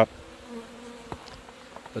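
Italian honeybees buzzing steadily as they fly around the hive boxes and entrances.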